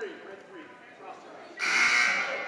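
Faint gym chatter, then about one and a half seconds in a loud referee's whistle blast begins, stopping play for a foul.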